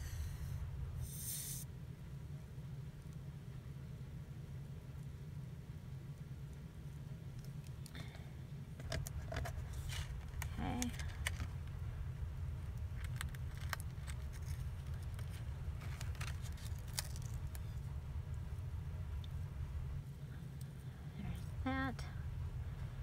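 Scattered light clicks and taps of small craft pieces being handled on a work surface, over a steady low hum. A brief murmur of voice comes about halfway through.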